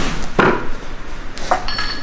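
Metal clinks and rattles from a loaded barbell and its bumper plates during heavy close-grip bench press reps: two short knocks, then a brief metallic ringing near the end.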